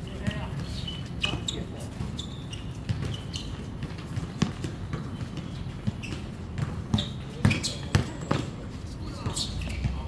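A basketball bouncing on an outdoor hard court during a pickup game: a string of sharp thuds, the loudest about seven to eight seconds in, with players' voices calling out.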